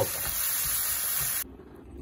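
Pieces of beef rib sizzling as they fry in tomato sauce in a skillet, cutting off suddenly about a second and a half in, leaving quiet room tone.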